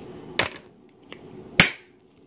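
Two sharp clicks from a can of tennis balls being handled, about a second apart, the second louder with a brief ring.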